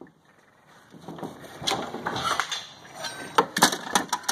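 Tools and coiled cords being packed back into a plastic tool bin: rustling and clattering with a few sharp knocks, the loudest near the end. It starts after about a second of near quiet.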